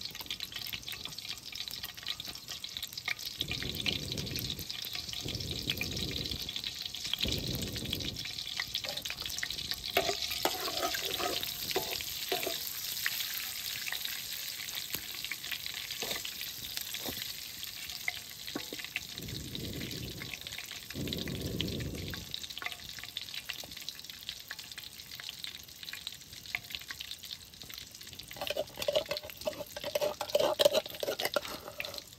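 Hot oil sizzling steadily in a blackened wok over a wood fire, with a metal ladle stirring in it in a few short spells.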